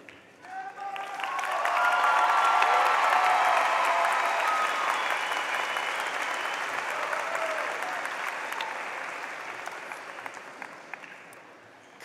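Large audience applauding, swelling over the first two seconds and then slowly dying away, with a few long cheers over it in the first few seconds.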